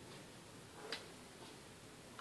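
Faint hiss with one sharp light click a little under a second in and a few fainter ticks: small metal tools (tweezers and soldering-iron tip) touching the motherboard while a tiny three-pin component is soldered by hand.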